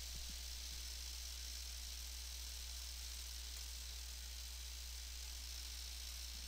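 Steady low hum with a faint hiss: the recording's background noise, with no other sound.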